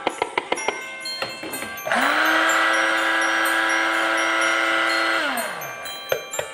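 Electric blender motor running steadily for about three seconds, grinding granulated sugar into superfine sugar, then winding down with a falling pitch when switched off.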